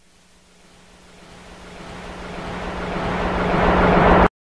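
A worship band's opening swell before the song: a wash of sound over one held low note, growing steadily louder, then cut off abruptly just after the end.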